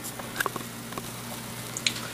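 Handling noise from a camera being moved: a few light clicks and taps over a steady low hum.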